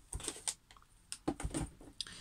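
A few light, irregular clicks and taps of hands handling the plastic and cardboard packaging of a craft kit on a tabletop.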